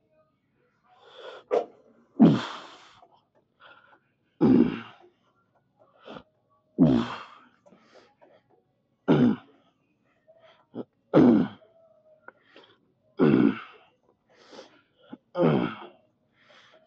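A man's forceful grunting exhalations from straining through hamstring curls on a lying leg curl machine, one strong grunt about every two seconds, with shorter breaths in between.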